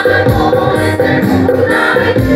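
A women's choir singing together on stage over instrumental accompaniment with a beat.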